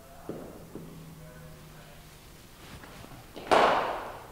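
Cricket ball striking the bat once, a loud crack about three and a half seconds in that rings briefly in the indoor net hall. Two faint knocks come before it.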